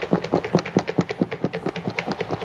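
Salad leaves and dressing rattling and knocking inside a lidded mixing bowl shaken hard by hand. The knocks come in a fast, even run.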